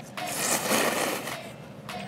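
Ramen noodles slurped in one long draw of air lasting about a second and a half.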